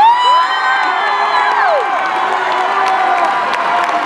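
A large crowd of students cheering and screaming in a gymnasium. Several high, shrill shouts rise and fall in the first two seconds over steady crowd noise.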